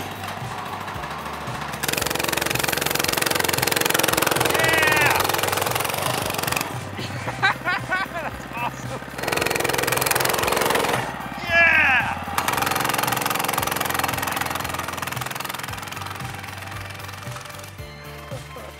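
A small single-cylinder 105cc mini bike engine running, mixed with background music and a few brief shouts.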